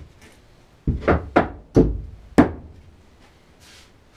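Wooden knocks and thuds as timber pieces of a pine bed frame are handled and set into place, about five irregular hits bunched between one and two and a half seconds in.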